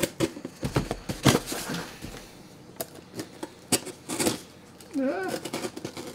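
A cardboard shipping box being forced open: irregular rips, crackles and knocks of cardboard and packing tape. A short vocal sound comes about five seconds in.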